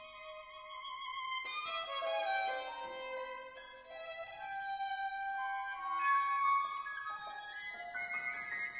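Solo violin with a chamber ensemble playing contemporary concert music: overlapping held notes that shift in pitch every second or so.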